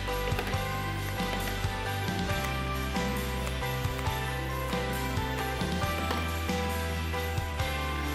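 Background music of held, changing notes, with a few short snips of pruning shears cutting rose hip stems.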